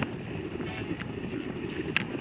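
Wind buffeting the microphone of a camera carried on a moving road bike, a steady low rumbling rush.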